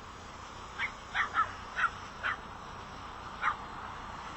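Six short, high-pitched animal calls, yelps or cries at uneven intervals, five close together and a last one about a second later.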